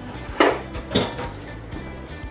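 Background music, with two sharp clinks of utensils against dishes about half a second and a second in, the first the louder.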